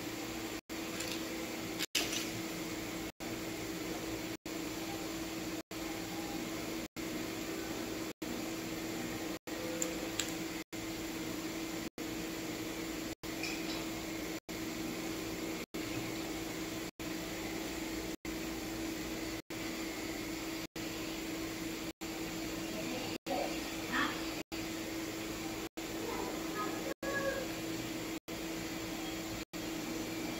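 Steady room hum with a low steady tone, cutting out briefly about every second and a quarter, with a few faint clicks of small plastic beads being handled.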